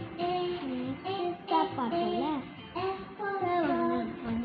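A child singing a melody in short phrases, the pitch gliding up and down.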